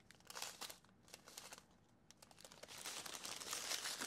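Small plastic bags of diamond-painting drills crinkling as they are handled. The sound is faint and sparse at first and grows more continuous in the second half.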